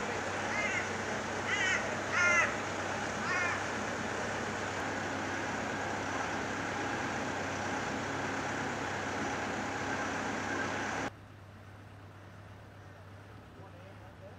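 A bird calling about five times in short, pitched calls during the first few seconds, over a steady construction-site background hum. About eleven seconds in, the background drops suddenly to a much quieter hush.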